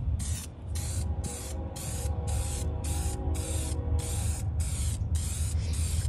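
Aerosol can of Dupli-Color Vinyl & Fabric gloss black spray paint hissing in short repeated bursts, about two a second with brief gaps, as it coats a plastic console panel. A steady low rumble runs underneath.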